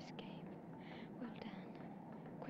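Faint, unintelligible whispering voice in short breathy phrases over a steady background hiss.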